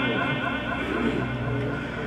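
A pause in amplified Quran recitation, leaving a steady low hum and hall noise through the public-address system.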